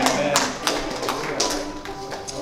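About five sharp taps in two seconds, unevenly spaced, over faint sustained instrumental tones as music begins.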